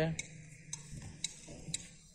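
Faint, regular ticking, about two ticks a second, over a low background hum.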